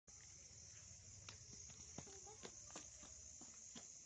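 Faint, steady, high-pitched trilling of night insects, with a handful of light clicks and taps spread through the middle.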